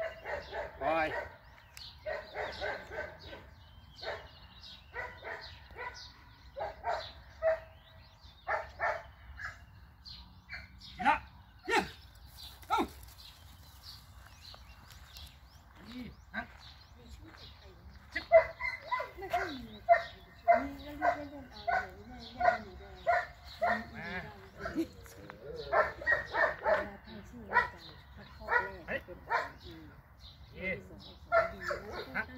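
German shepherd dogs barking repeatedly in short barks: scattered at first, then a long quick run of barks through the second half.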